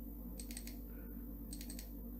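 Computer mouse clicking in two quick clusters, about half a second in and again near the end, as folders are double-clicked open, over a steady low hum.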